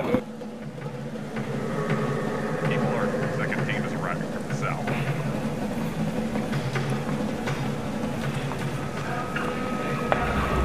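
Indistinct background voices over a steady low hum, a film set's room noise.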